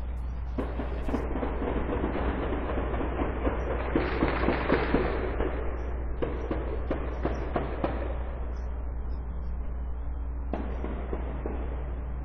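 Outdoor security-camera audio: a steady electrical hum under a rushing noise that swells and fades, with a rapid run of sharp pops between about four and eight seconds in.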